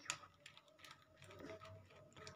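Near silence, with a few faint light clicks and scrapes of a spoon stirring thick blended pomegranate juice in a plastic mesh strainer.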